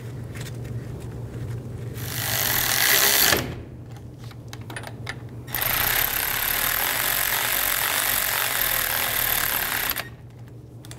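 Power ratchet running the front brake caliper bolts down: a short burst about two seconds in, a pause with light clicks, then a longer steady run to the end.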